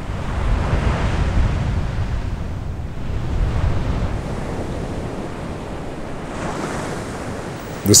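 Ocean surf breaking on a beach, with wind. It is a steady wash of waves that swells about a second in and again near the end.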